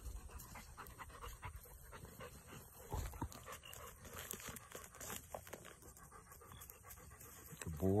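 A retriever panting in a run of short, quick breaths.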